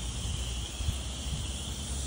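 Insects chirring steadily in the grass, with a low rumble and soft footsteps on wet grass underneath.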